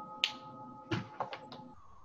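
Several sharp clicks or taps: one about a quarter second in, then a quick cluster of four around a second in. Under them the ring of a bell-like chime hangs on and fades out near the end.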